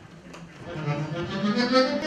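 A live band starts an instrumental piece: a sustained, held melody line comes in about half a second in and swells louder.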